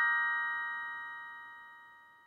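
The last chord of a short bell-like intro jingle rings on after its notes are struck and fades away steadily to nothing.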